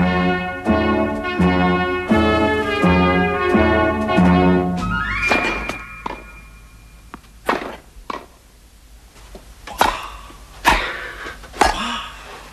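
A short musical jingle of held notes, then a tone that rises and holds, followed by four sharp thunks spaced one to two seconds apart.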